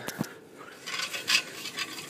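Handling noise from a phone held against a shirt: fabric rubbing and bumping on the microphone, heard as a few short scrapes and clicks.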